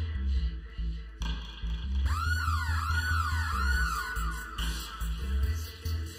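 A roots and dub reggae track played through a sound system, driven by a deep, pulsing bass line. About two seconds in, a swooping effect repeats in quick arcs for a couple of seconds, then fades.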